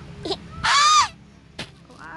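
A toddler's high-pitched squeal, one loud arched shriek of about half a second after a brief smaller vocal sound, while being fed and laughing. A single click follows a little later.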